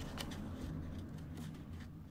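A sheet of origami paper being folded and creased by hand: several short, crisp rustles and taps of paper and fingers against the table, over a steady low hum.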